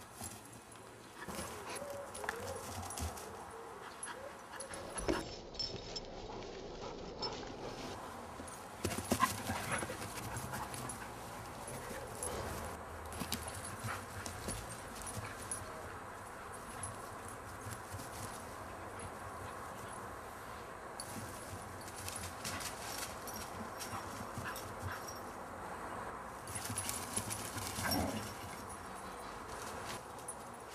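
Lurchers running and playing on a grass lawn: scattered paw thuds and rustles on the turf, with a brief pitched dog vocal sound about two seconds before the end.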